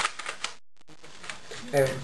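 Plastic clicks and rattles from an airsoft rifle being handled while its battery compartment is opened: one sharp click at the start, then a few lighter clicks. The sound drops out completely for a moment partway through.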